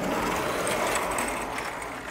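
A large sliding chalkboard panel being moved along its track, a steady rumble that starts abruptly and eases off after about two seconds.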